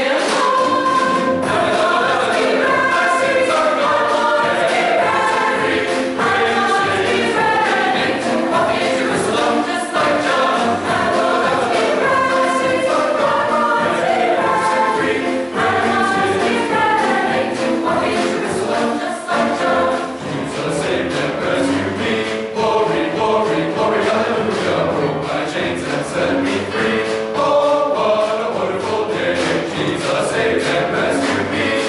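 A mixed choir of men's and women's voices singing a sacred song together, with notes held and moving line by line.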